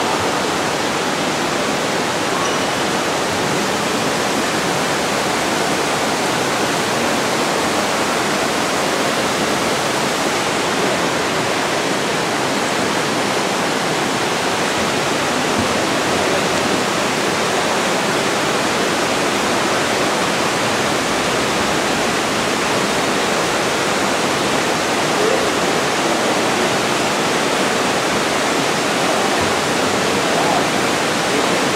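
Water spilling over a four-foot man-made dam in a cave river: a loud, steady rush of falling water that never lets up.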